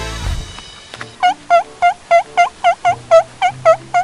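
An edited-in comedic sound effect: a short low whoosh at the start, then about eleven quick, bouncy pitched notes, roughly four a second, each dipping and rising in pitch.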